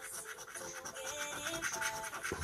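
A coin scratching the coating off a paper scratchcard in quick, repeated strokes, over background music with a simple held-note melody.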